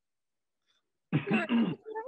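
About a second of silence, then a brief vocal sound from a person, heard over a video call, just before speech resumes.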